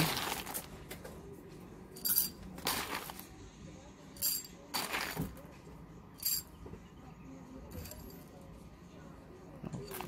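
Whole coffee beans spooned into a small glass shot glass on a kitchen scale, clinking against the glass in several short rattles about a second apart.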